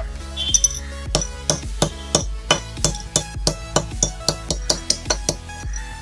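Steel hammer striking a metal bottle cap against a concrete floor over and over, about three sharp strikes a second, flattening the cap. Electronic dance music plays underneath.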